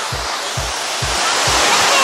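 A waterfall pouring, a steady rush of water, under background music whose low beat falls about twice a second.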